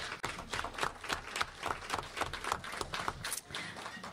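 Audience applauding, many hands clapping steadily, stopping at about four seconds.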